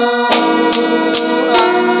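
Pre-recorded, studio-programmed backing track of the song playing between sung lines: sustained instrumental chords over a steady beat.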